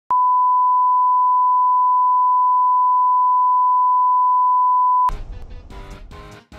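A steady, loud pure test tone held at one unchanging pitch for about five seconds, cutting off abruptly as music with guitar starts.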